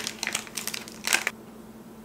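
Crinkling and rustling of the packaging of under-eye patches as the patches are taken out, a quick run of light crackles over the first second or so.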